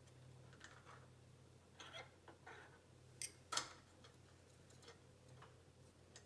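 Faint clicks and taps of small metal focuser parts being handled and fitted together, over a low steady hum. The sharpest click comes about three and a half seconds in.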